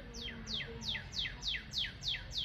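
A songbird singing a quick series of repeated downslurred whistled notes, about three a second.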